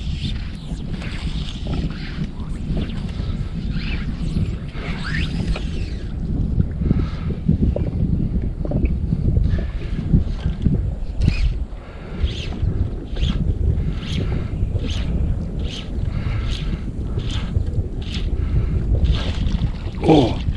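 Wind buffeting the microphone of a camera mounted on a fishing kayak, a steady low rumble. Through the second half comes a run of short, light swishing strokes, one or two a second.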